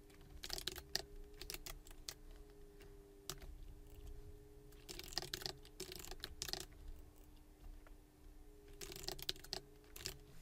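Typing on a computer keyboard: irregular runs of keystroke clicks with short pauses between them. A faint steady hum runs underneath.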